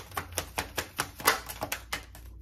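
A deck of tarot cards being shuffled by hand. It gives a quick run of light card slaps and clicks, about five or six a second, with one louder slap a little past the middle.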